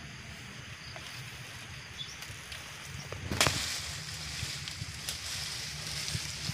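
Dry banana leaves rustling as a bunch of green bananas is broken free from the plant, with one sharp crack a little past halfway, over a low steady rumble.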